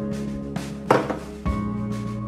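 Background music with slow, sustained chords and a soft beat. About a second in, a single sharp knock: a bowl knocked against the rim of a mixing bowl as it is emptied.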